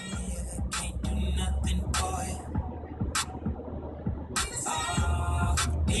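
Hip-hop music with a steady beat playing on a car stereo inside a moving car, over the car's low road rumble.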